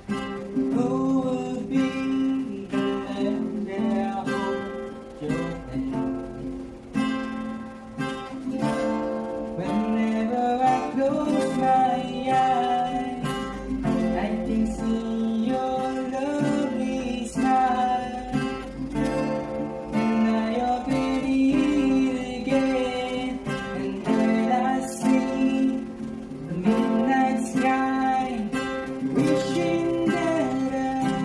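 Acoustic song cover: an acoustic guitar strummed steadily under a singing voice carrying the melody.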